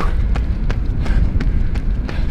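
A runner's footsteps on asphalt at a fast, steady cadence, about three strides a second, over a steady low rumble.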